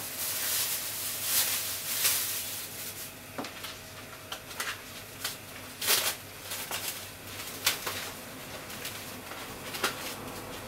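A pot of water heating on a gas stove, coming up to the boil: a steady hiss with irregular pops and crackles of bubbles, a few louder than the rest.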